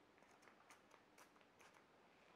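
Near silence: room tone with a few very faint ticks.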